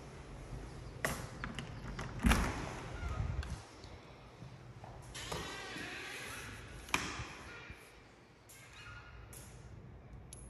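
An interior door being opened and passed through: a click about a second in, then a loud thump a little over two seconds in, followed by handling noises and further sharp clicks, one about seven seconds in.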